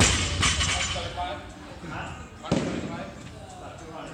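Loaded barbell with bumper plates dropped onto the gym floor, landing with a loud slam right at the start and bouncing as it settles. A second, lighter thud comes about two and a half seconds in.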